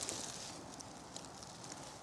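Faint rustling with a few light ticks from dry leaf litter and nut hulls, strongest in the first moment and fading to a soft hush.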